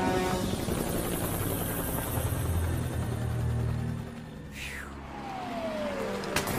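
Helicopter rotor running with background music, fading about four seconds in; a single falling tone sounds near the end.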